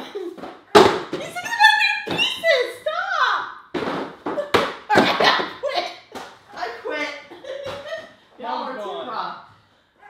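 People talking indoors, with a few sharp knocks: about a second in and twice more around four to five seconds in.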